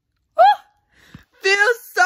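A woman's short, rising, high-pitched squeak about half a second in, then high-pitched laughter starting about a second and a half in.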